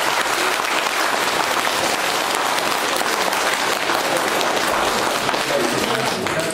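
Many people applauding together, a steady wash of hand claps held at one level.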